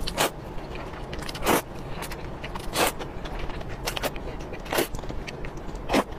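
Flat wheat noodles being slurped up close: short, loud slurps roughly every second and a half, with smaller wet mouth clicks between them.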